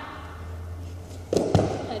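Feet landing on a padded gym floor mat at the end of a cartwheel-type aerial: two quick thuds about one and a half seconds in.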